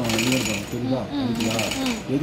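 Industrial lockstitch sewing machine running in two short bursts, each just over half a second, over a man's voice.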